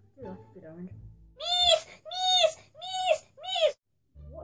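A boy's voice calling out four times in a row, each call short, high-pitched and rising then falling, after some quieter murmuring.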